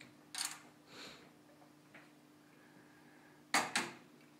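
A PCIe Wi-Fi card and its metal bracket knocking against a PC case's expansion-slot area as the card is fitted: a short clatter about a third of a second in, light knocks after it, then two sharp clicks close together near the end.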